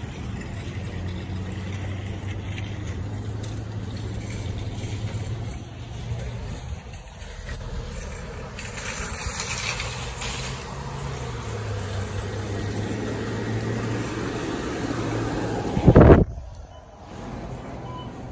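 Parking-lot background of vehicle engine hum, a steady low drone with traffic noise, then a brief, very loud low rumble about sixteen seconds in, after which the sound drops to a quieter level.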